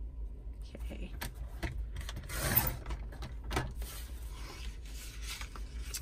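Sliding-blade paper trimmer cutting a sheet of scrapbook paper: scattered clicks as the paper and cutter are handled, then the cutter head running down its rail through the paper for about half a second, a couple of seconds in, the loudest sound, with a few more clicks after.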